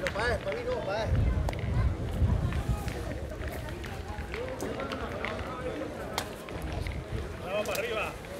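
Background chatter of players and spectators across an outdoor petanque ground, with wind rumbling on the microphone, heaviest about a second in. A few sharp clicks stand out among the voices.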